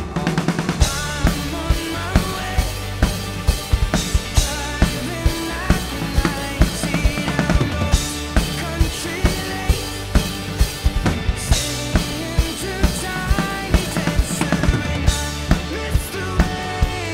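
Acoustic drum kit playing a driving pop-rock beat of bass drum and snare along with the recorded song, with a cymbal crash about every three and a half seconds.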